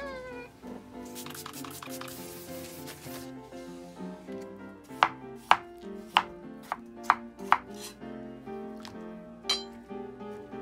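Kitchen knife cutting a peeled potato on a plastic cutting board: about six sharp chops in quick succession in the second half. A cat meows briefly at the very start.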